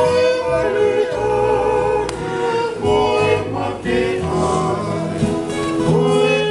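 Group of men singing a Tongan song in harmony to strummed acoustic guitars, with long held notes.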